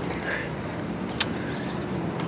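Steady outdoor city background noise, a low hum like road traffic, with a single short click about a second in.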